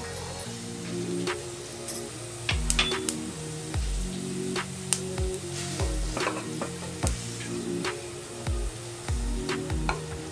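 Cumin seeds sizzling in hot oil in a nonstick kadhai, with occasional sharp crackles, over background music.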